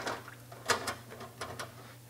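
A few light clicks and clinks as metal carburetor parts are set into the stainless steel basket of an ultrasonic cleaner, over a faint steady hum.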